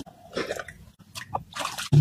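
Small, irregular splashes and drips of pond water as a hand dips and moves in it.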